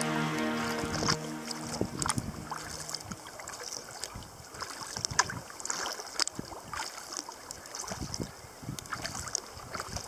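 Background music ends about two seconds in. After that, water laps and splashes against a sea kayak's hull with irregular paddle strokes as the boat moves through calm shallow water.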